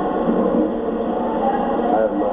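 Several people's voices talking over one another in a steady babble.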